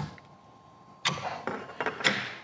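Small tools and parts being handled on a CNC router's table: a few sharp clicks and knocks, starting about halfway through.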